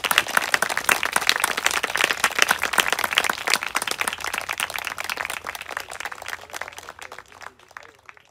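A small audience applauding: many hands clapping densely, thinning out and fading away over the last couple of seconds.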